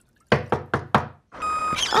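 Four quick knocks on a wooden door, a cartoon sound effect. A steady humming drone, like a machine running, comes in near the end.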